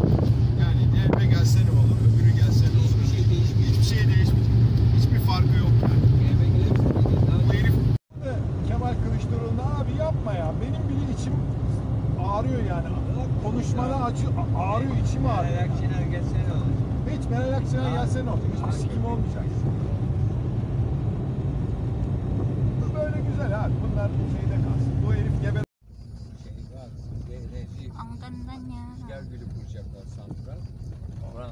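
Car engine and road noise heard from inside the cabin while driving, a steady low drone, with people talking over it. The sound cuts out sharply about 8 s in and again near 26 s; the last stretch is quieter.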